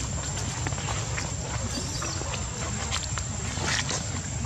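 Steady low rumble of wind on the microphone, with scattered light ticks and rustles of macaques moving over dirt and leaf litter.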